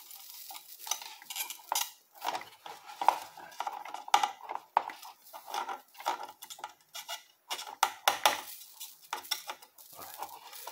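Irregular clicks, taps and scrapes of a soldering iron tip working the solder joints on the back of a computer motherboard, with the board knocking and shifting on the bench, while capacitors are desoldered.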